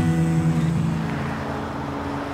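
Acoustic guitar chord ringing out and slowly fading after a strum, with a faint hiss of road traffic behind it.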